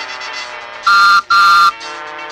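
Postman's whistle tooting twice, two short steady toots about a second in, the second a little longer: the read-along record's signal to turn the page. Soft background music plays underneath.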